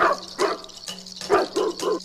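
A dog barking five times: two spaced barks, then three in quick succession near the end.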